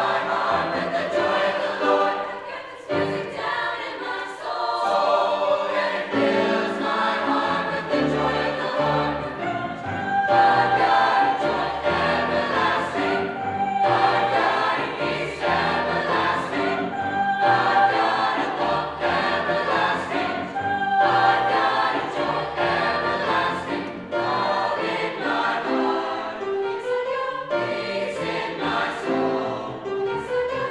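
High school mixed choir singing, with grand piano accompaniment.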